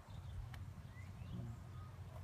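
Faint outdoor background: a steady low rumble with a single light click about half a second in and a brief faint chirp a little after a second.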